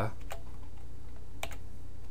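A few keystrokes on a computer keyboard: two short clicks near the start and two more about one and a half seconds in, over a steady low hum.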